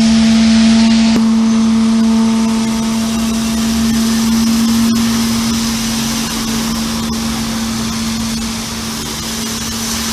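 Cars driving through street flood water from a burst water main, their tyres pushing up splashing waves, over a steady engine hum that holds one pitch throughout.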